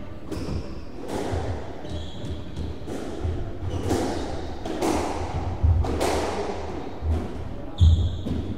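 Squash ball being hit and striking the walls of a squash court, several sharp impacts that ring in the hard-walled court. There are short sneaker squeaks on the wooden floor and thuds of footsteps, with the loudest hit and squeak near the end.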